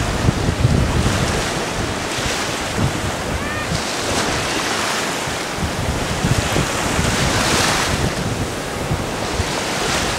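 Small surf washing up a sandy beach, each wash swelling and fading, with wind buffeting the microphone.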